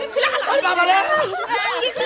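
Several women talking over one another at once, their high-pitched voices overlapping with no single speaker standing out.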